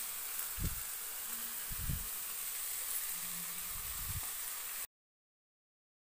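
Onion-tomato masala sizzling steadily in a steel kadhai as chopped raw jackfruit is tipped in, with a few dull low thumps. The sound cuts off suddenly near the end.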